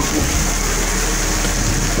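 Heavy rain pouring down onto a street, a steady hiss.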